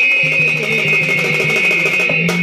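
Live instrumental accompaniment of Odia Danda nrutya folk music: a high note held steadily throughout over a low note that pulses on and off, with no singing.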